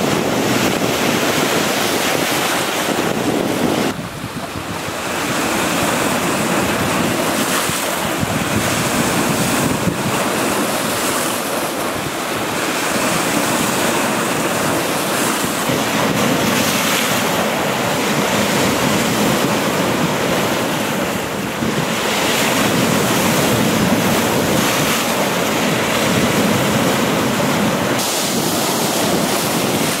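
Baltic Sea waves breaking and washing over shoreline rocks in a continuous surging wash, with wind buffeting the camcorder's built-in microphone.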